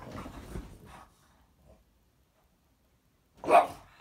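French bulldog scuffling on bedding in the first second, then a single loud, short bark about three and a half seconds in.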